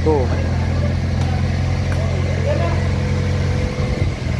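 A steady low mechanical hum, like an engine or motor running, under a man's voice that says one word at the start.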